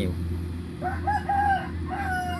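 A rooster crowing, a broken, pitched call that starts about a second in and runs on past the end, over the steady low drone of a combine harvester working in the field.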